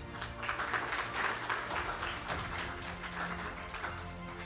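Audience applauding, many hands clapping at once, over steady background music; the clapping starts just after the beginning and dies away near the end.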